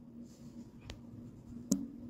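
A quiet pause with a faint steady low hum and two soft clicks, one just under a second in and a slightly louder one near the end.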